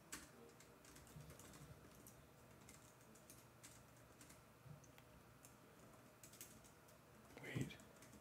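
Faint computer keyboard typing: scattered, irregular keystrokes, with a single spoken word near the end.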